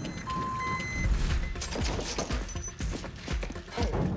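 A truck's reversing alarm beeping at a steady pitch, about two beeps a second, stopping about a second in. Background music with a beat then takes over.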